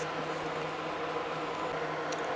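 A steady background hum with a few faint steady tones running underneath, unchanging and with no distinct events.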